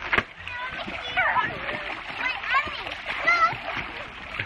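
Water splashing and churning as children thrash about in an inflatable pool, with children's voices calling out briefly again and again over the splashing.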